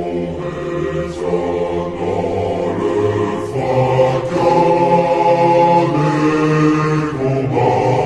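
Choir singing a French military officer-cadets' promotion song, slowed down and drenched in reverb, so the voices hang in long held chords.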